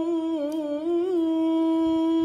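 A man reciting the Quran in the melodic tilawah style, holding one long note. The note wavers in two quick ornaments in its first half, then holds steady.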